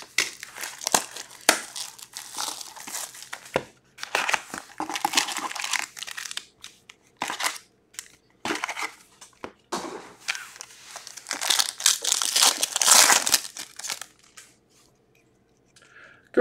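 Plastic shrink-wrap crinkling and tearing as it is pulled off a box of trading cards, with the cardboard box and card packs being handled. Near the end a foil card pack is torn open, the loudest crinkling of the stretch, after which it goes quiet.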